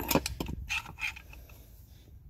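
Light metal clicks and knocks from a steel lower control arm and bar being handled by hand, several short sharp ones in the first second, then quieter.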